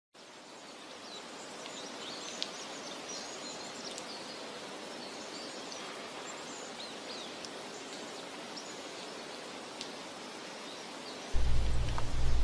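Forest ambience: a steady hiss of background noise with scattered short, high bird chirps and whistles, fading in over the first second or two. Near the end a loud, deep low drone starts abruptly.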